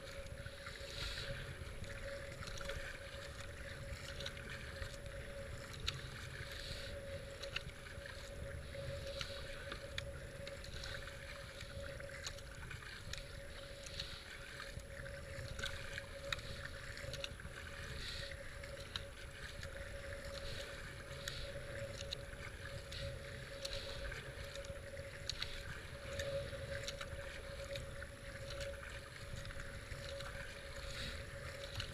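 Kayak paddle strokes splashing into fast-flowing floodwater, about one stroke a second, over a steady rush of moving river water and a low wind rumble on the kayak-mounted camera.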